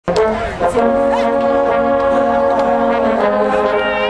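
Marching band brass section playing loud, long-held chords. The chord changes a little past three seconds in.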